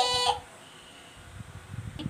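A young girl's voice holding a high, steady sung note that cuts off about a third of a second in, followed by a quiet room with a few faint knocks.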